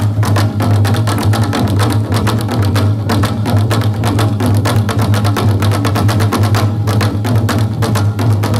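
Live percussion music from painted bowl drums struck with sticks: fast, even, unbroken strokes over a steady low hum.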